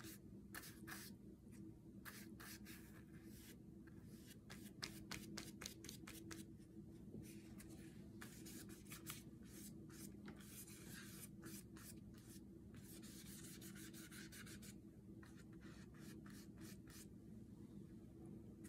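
Faint watercolor brush strokes and dabs on paper: short scratchy brushings and light taps, with a low steady hum underneath.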